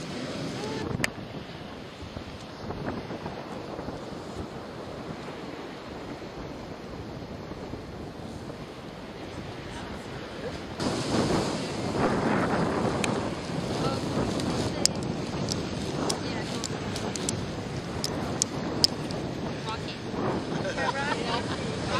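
Ocean surf with wind buffeting the microphone, a steady rushing that grows louder a little past halfway, with a few sharp clicks.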